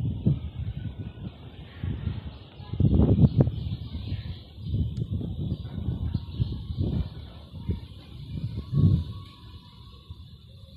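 Wind buffeting the microphone in irregular gusts: a low rumble that surges and fades, loudest about three seconds in and again near nine seconds.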